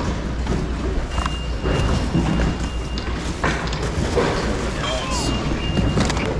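Busy warehouse-store ambience: background voices over a steady low hum, with items knocking and rustling as a bin of toys is rummaged through. A high, steady electronic beep sounds twice, for about two seconds starting about a second in, and again for about a second near the end.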